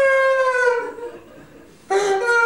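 A man's voice holding one high, wordless vowel tone for about a second, sagging slightly in pitch as it ends; after a short pause a second voiced sound starts near the end, lower at first and then stepping up.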